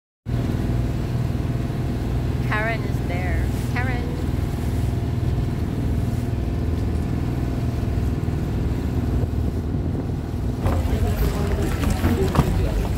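Outrigger bangka boat's engine running steadily, heard from on board as a loud, even low drone.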